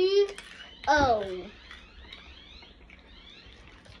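A child's voice: two short, high-pitched exclamations in the first second and a half, the first rising and the second falling, then only faint background sound.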